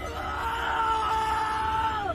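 A man's long, strained yell of effort, held for about two seconds and falling in pitch as it breaks off.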